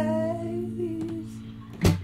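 Acoustic guitar strummed once and left ringing, with a voice humming a wordless note over it; a second strum comes near the end.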